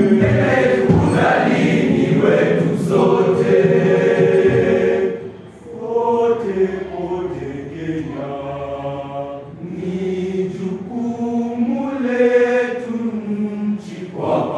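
Secondary-school choir singing a Kenyan choral song. The singing is loud and full for the first five seconds, dips briefly, then moves into long held chords.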